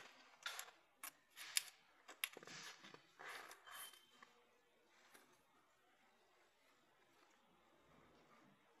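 Short rustles and sharp little clicks over the first four seconds as a paper test strip is fed through the metal jaws of a Schopper-type folding endurance tester.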